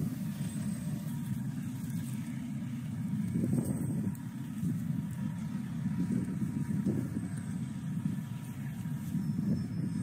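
Steady low rumble of diesel construction machinery running at a work site, with no distinct knocks or beeps.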